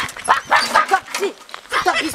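Men shouting and yelling over one another in short, urgent outbursts.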